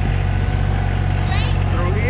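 Kubota compact tractor's diesel engine running steadily as the tractor drives, a constant low hum.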